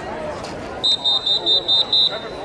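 A rapid run of high-pitched electronic-sounding beeps, about five a second, starting a little before the middle and lasting just over a second, over background chatter.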